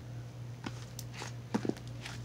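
Slime being pressed and spread flat by hand, giving several small sticky clicks and pops through the second half over a steady low background hum.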